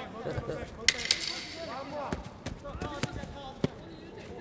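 Boxing gloves and shins landing on a kickboxer's body and guard: about six sharp smacks spread unevenly through, over faint voices.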